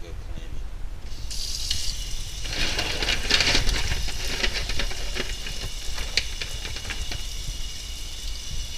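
Food sizzling and crackling in a hot pan: the sizzle sets in about a second in and is loudest around three seconds, with a scatter of fine crackles.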